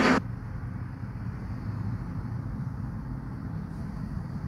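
Steady low background rumble with a faint hum, with no speech over it.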